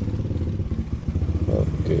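Motor scooter engine running steadily at low speed, with a dip in level about a second in.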